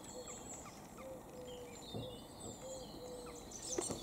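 Faint outdoor birdsong. A low arched call is repeated about every half-second, with thin, high chirps and whistles from songbirds over it.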